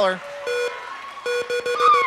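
The Price Is Right Big Wheel spinning, its pegs clicking past the pointer in a rapid, irregular clatter that thickens about a second in.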